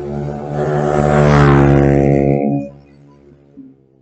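A motor vehicle driving past close by on the road, growing louder to a peak about a second and a half in, then fading off quickly by about three seconds in.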